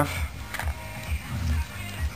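Background music with a low, pulsing bass.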